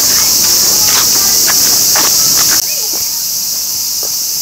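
Cicadas in a loud, steady, high-pitched chorus. About two-thirds of the way through it drops abruptly to a somewhat quieter level.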